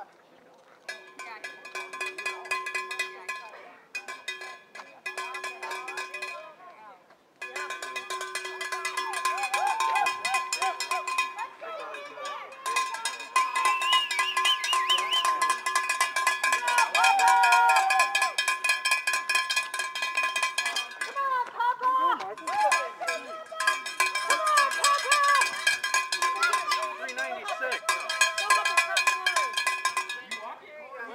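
Cowbell shaken rapidly and continuously, a dense metallic clanking with a steady ring, stopping briefly a few times, with voices calling out over it.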